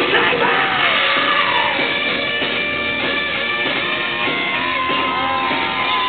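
Rock band playing live in a large hall, loud and unbroken, with a shouted, sung lead vocal over the band, recorded on a small digital camera's microphone.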